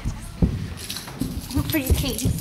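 A run of uneven heavy thumps and knocks, with a short wordless voice sound near the end.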